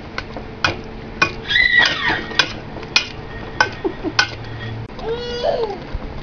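A metal spoon stirring chopped figs in a stainless steel pot, clinking against the pot wall in a string of sharp clicks. About a second and a half in comes a short high-pitched squeal that rises and falls.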